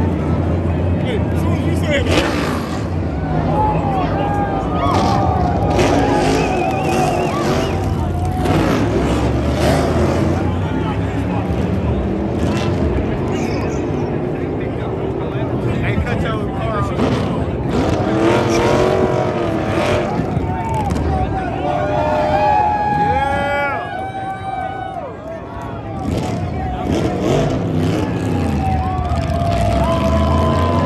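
NASCAR stock car V8 engines running on the track as cars go by, with a crowd of spectators cheering and shouting over them. The loudness dips briefly about three-quarters through.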